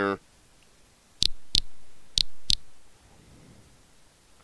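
Two quick double-clicks of a computer mouse, the pairs about two-thirds of a second apart, as the on-screen image is panned.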